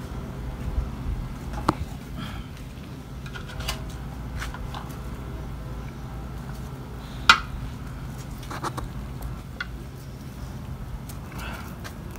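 Scattered light clicks and taps of a knife and fingers against plates as a jackfruit is cut and pulled apart. The sharpest click comes about seven seconds in, over a steady low hum.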